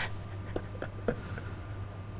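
Quiet studio room tone: a steady low hum with a few faint, brief ticks and rustles.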